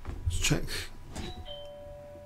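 Electronic notification chime from a computer: a short high tone, then a lower tone held on and still ringing at the end, after a brief breathy sound near the start.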